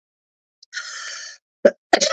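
A person's breath through the mouth, about half a second long, followed by a sharp lip smack just before speaking resumes.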